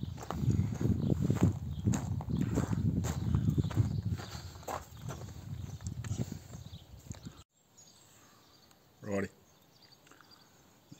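Footsteps crunching on gravel with handling noise from the phone as it is carried, cut off suddenly about three-quarters of the way in. After that only a low background, with one short pitched sound near the end.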